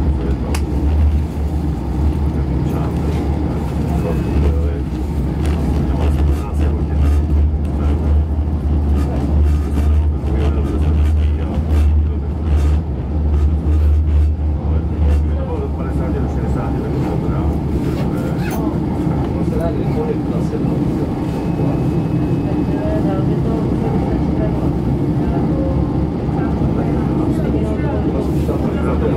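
Small diesel railcar heard from inside while under way: a steady low engine drone over wheel and running noise. The deep drone is strong for about the first fifteen seconds, then eases off while the running noise carries on.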